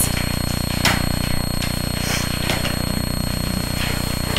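Steady low machine hum with a faint high-pitched whine, and a couple of faint clicks about one and two and a half seconds in.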